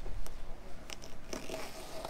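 Razor blade slicing through excess blue sequin headliner fabric along the staple line: a soft, crunchy cutting and rustle of cloth, with a couple of light clicks about a second in.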